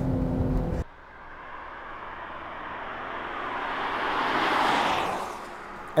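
Cabin road and engine rumble with a short laugh, cut off under a second in. Then a car drives past outside: its tyre and engine noise swells to a peak about four and a half seconds in and fades away.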